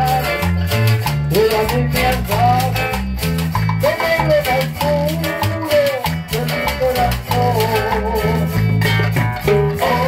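Cumbia band playing: a gliding melody line over a steady bass line and a regular percussion beat.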